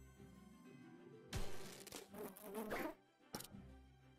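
Quiet slot-game music with a buzzing, insect-like sound effect that gets louder for about two seconds in the middle, then a short click.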